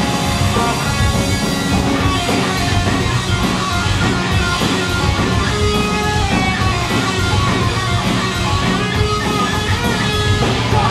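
Live punk rock band playing at full volume: electric guitars strumming over bass and drums, loud and unbroken.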